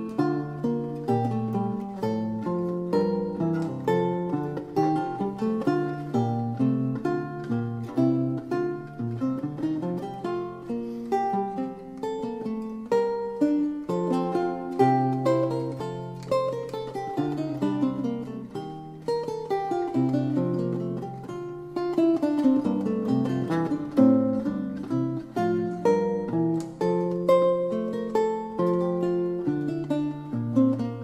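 Solo lute music: a continuous flow of plucked notes, several sounding together, with quick runs up and down.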